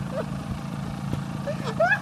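Trials motorcycle engines idling with a steady low beat, with short bits of a person's voice rising briefly near the end.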